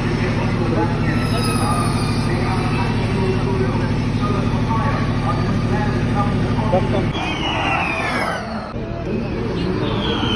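A steady low mechanical drone that cuts off about seven seconds in. Then a Formula E electric race car passes, its motor whine high and falling in pitch.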